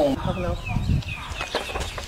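A bird chirping in short, falling notes, about half a dozen across two seconds.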